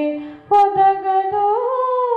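A woman's voice humming a slow devotional melody in long held notes, part of a song to Rama. A low note fades out, there is a short break about half a second in, then a new held note that rises near the end.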